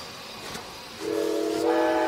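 Train sound effect: a steady hiss, then a train whistle sounding a chord of several steady tones from about a second in.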